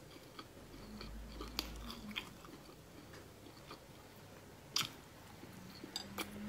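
Close-miked chewing of a soft food, with scattered wet mouth clicks and smacks and a sharper click near five seconds in.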